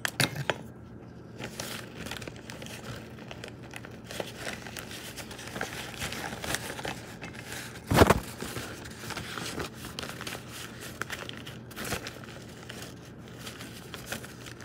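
Paper towel rustling and crinkling as it is handled and rubbed over a spoon, with a single loud bump about halfway through.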